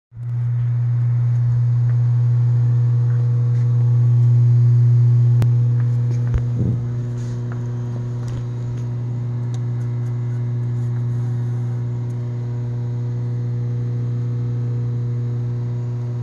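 Steady low electric motor hum with a few overtones, most likely the milling machine's motor running. A couple of light clicks come around the middle.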